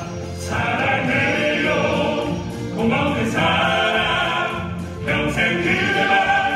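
Male vocal ensemble singing a Korean pop ballad in harmony through microphones, the sung phrases breaking briefly about half a second in, near three seconds and near five seconds.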